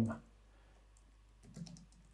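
Faint keystrokes on a computer keyboard: a short run of typing as a word is entered.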